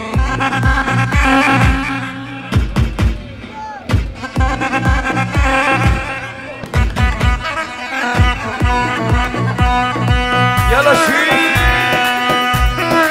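Amplified live dabke music: a sustained, pitch-bending melodic lead over a steady, heavy drum beat.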